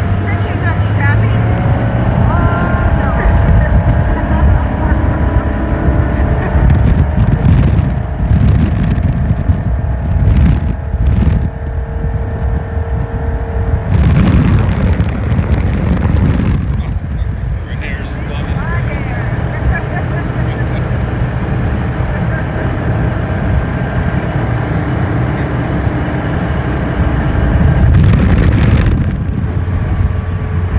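Motorboat running at speed: a steady engine drone under the rush of water along the hull, with wind gusting on the microphone several times, loudest about halfway through and near the end.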